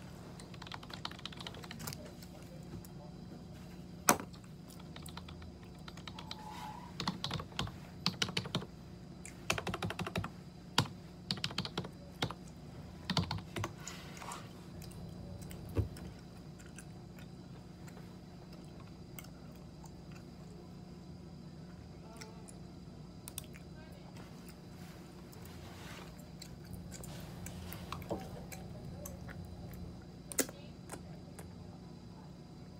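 Computer keyboard typing in quick bursts of key clicks, mostly in the first half, with a few single louder clicks, over a steady background hum.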